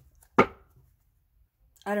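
A single sharp knock of a hard object set down on the tabletop, about half a second in. It is followed by a pause, and then a woman starts speaking near the end.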